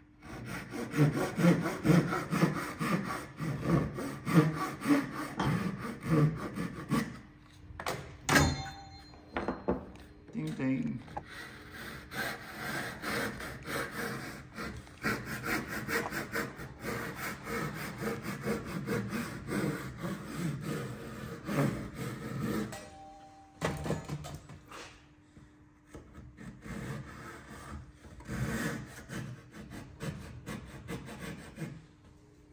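Japanese crosscut pull saw cutting a tenon shoulder across the grain, in quick repeated strokes, with a single sharp knock about eight seconds in. The strokes pause briefly near the end, then resume more lightly.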